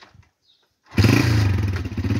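Honda motorcycle engine coming to life about a second in and then running loudly with a fast, even firing beat.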